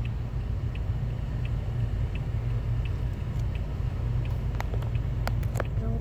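Car cabin sound of a stopped, idling car: a steady low engine and traffic rumble, with a faint tick repeating about every 0.7 seconds and a few sharper clicks near the end.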